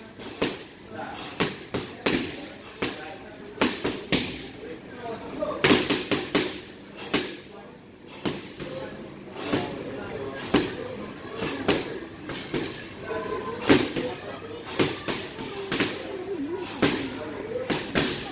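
Boxing gloves landing on a heavy punching bag in quick, irregular combinations: a string of sharp thuds about one to two a second, with pauses between flurries.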